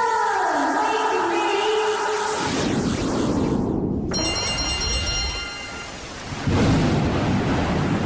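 Electronic sci-fi jingle music with gliding tones, then about six and a half seconds in a thunderstorm sound effect of heavy rain with thunder starts abruptly and runs on loudly.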